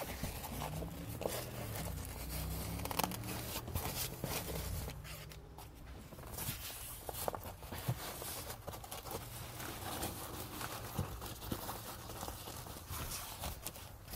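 Polyester fabric cover rustling and crinkling as it is handled and smoothed down, with faint rasps and small clicks as its hook-and-loop strips are pressed and lined up.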